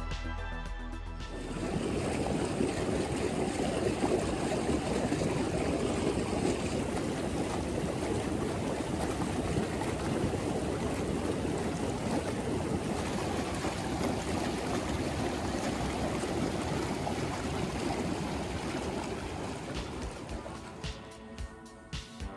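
Background music for about the first second, then a hot tub's jets churning the water: a steady bubbling rush that fades out near the end.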